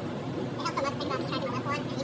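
A person talking indistinctly, starting about half a second in, over a steady hum of background noise.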